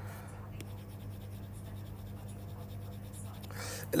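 Faint scratching and tapping of a stylus on a tablet's glass screen as marks are erased, over a steady low electrical hum.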